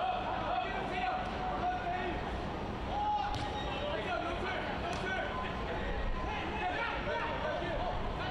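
Match ambience at a live soccer game: a steady crowd murmur with distant shouts from players and fans, and a couple of faint thuds of the ball being kicked about halfway through.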